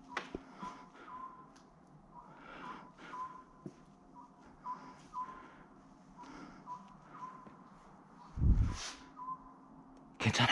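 Faint, short, high chirps recurring at uneven spacing, about two a second, over soft scuffing noises, with a single heavy low thump about eight and a half seconds in.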